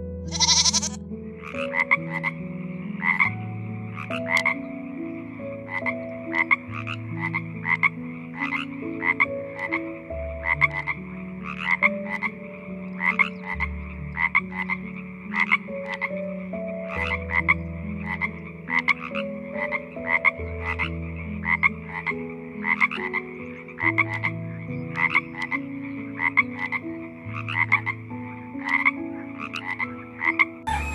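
Frog croaking: short, sharp croaks repeated about two to three times a second, starting about a second in and running on in uneven clusters.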